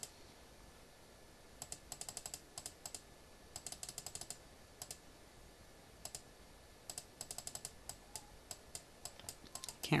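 Laptop keyboard keys clicking in quick bursts, several runs of rapid taps about a second long with short pauses between.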